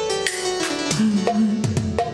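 Live band music with no voice: hand drums played in a steady rhythm over held keyboard notes, with a few deep drum strokes that bend down in pitch.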